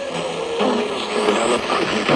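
Weather radio loudspeakers playing the NOAA Weather Radio warning broadcast, heavy with static hiss, with fragments of the broadcast's voice and a steady hum under it.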